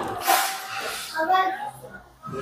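Indistinct background voices and room noise in a café, with a brief hiss at the start.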